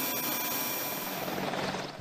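Steady turbine whine and rushing hiss from a parked AH-64 Apache helicopter on the flight line, with a few thin high tones held over it, fading slightly near the end.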